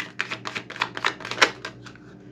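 A thick deck of tarot cards being shuffled by hand: a quick run of about a dozen crisp card clicks, roughly six a second, the loudest about one and a half seconds in, stopping shortly before the end.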